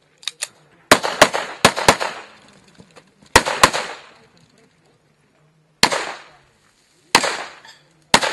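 Pistol shots fired rapidly, mostly in quick pairs: four shots about a second in, two more around three and a half seconds, then single shots near six and seven seconds. Each shot trails off in a short echo.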